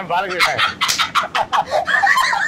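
Hen-like clucking: a quick run of short, high clucks, about five a second.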